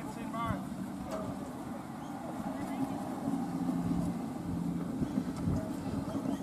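Outdoor ambience: faint voices near the start over a low, steady hum, which strengthens into a steady low drone in the second half.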